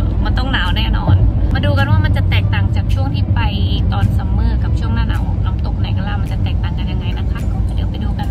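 A woman talking inside a moving car, over the steady low rumble of the car driving, heard from within the cabin.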